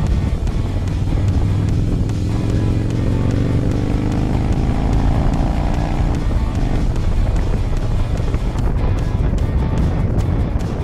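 Harley-Davidson FXDC V-twin motorcycle engine running at road speed, its pitch climbing steadily for a few seconds around the middle as the bike speeds up. Music plays along with it.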